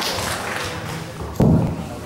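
A single dull thump about a second and a half in, over faint voices in a large hall.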